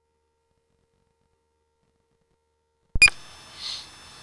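Dead silence for about three seconds, then a sharp click as the recording's sound cuts back in, followed by a faint steady electronic whine from the sewer-camera recording system.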